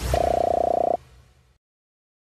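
End-card sound effect: a whoosh with a low rumble, then a short buzzy horn-like tone lasting about a second that cuts off sharply and leaves a faint fading tail.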